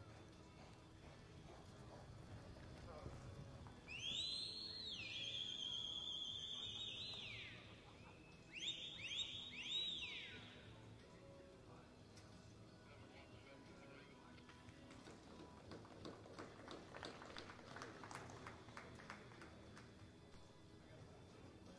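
A person whistling loudly in two bursts. First comes a note that swoops up and down and is then held for about three seconds before falling away. A second or so later, four quick up-and-down whoops follow.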